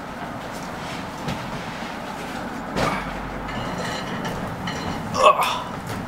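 Steady rumbling background noise, with a short exclamation from a person's voice about five seconds in.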